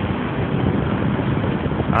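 Steady rushing of wind on the microphone while riding a bicycle along a street, with general road noise underneath.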